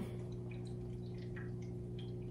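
Quiet background room tone: a steady low hum with a few faint, scattered ticks.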